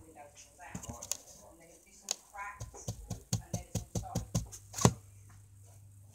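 A quick run of about ten sharp clicks and taps close to the microphone over two to three seconds, the last one the loudest, with faint murmured speech before it.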